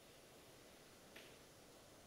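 Near silence: room tone, with a single faint click a little over a second in.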